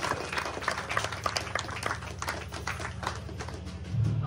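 Scattered hand claps from a small club crowd, irregular and thinning out, over a steady low hum.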